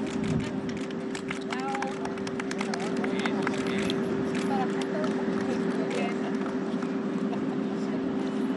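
Outdoor event ambience: scattered voices and many short sharp clicks, densest a few seconds in, over a steady low mechanical hum.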